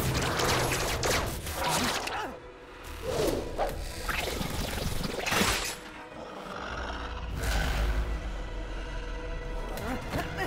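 Dramatic action-cartoon score mixed with sound effects: sudden hits and sweeping whooshes, with a low rumble building in the second half.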